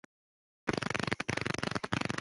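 Harsh, crackling noise from a voice-chat audio feed that cuts in about two-thirds of a second in after dead silence and keeps flickering rapidly: a faulty audio connection putting out a noise instead of a voice.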